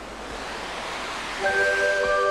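Rushing wash of surf and spray, swelling in as the spot begins. About one and a half seconds in, music with long held notes comes in over it.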